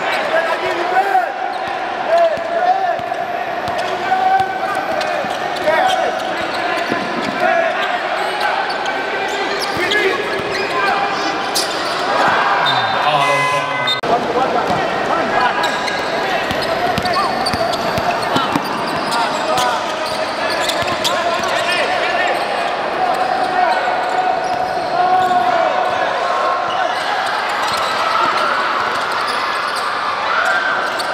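Live indoor basketball play: a basketball bouncing on the hardwood court, with many voices of players and spectators carrying through the hall.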